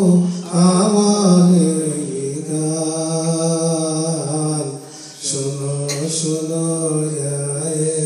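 A man's solo voice singing a Bangla Islamic devotional song in a slow, chant-like style, drawing out long held notes. There is a brief breath break about five seconds in.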